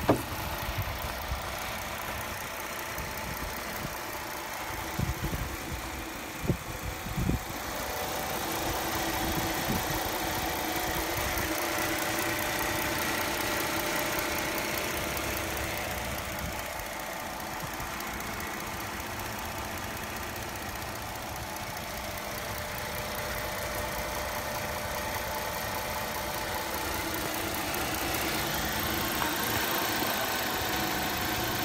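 A 2006 Chrysler 300's 3.5-litre V6 idling steadily, heard close up with the hood open. A few short knocks come in the first several seconds.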